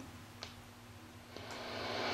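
Static hiss from a National NC-300 tube receiver's speaker, swelling up from almost nothing in the second half as the volume control is turned up. The new 6AQ5 audio output stage is passing audio, though the owner thinks the volume pot is dirty. A faint click comes just before it.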